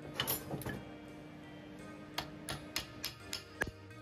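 Small hammer tapping a curved aluminium bracket on a steel workbench: three or four blows in the first second, then a run of about seven taps from about two seconds in. Background music plays underneath.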